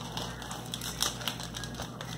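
Faint crinkling of a plastic snack wrapper being handled, with small scattered clicks and one slightly louder rustle about a second in.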